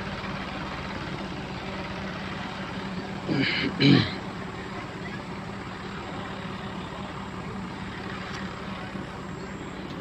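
Tractor engine running steadily with an even hum, driving a tubewell water pump through a shaft.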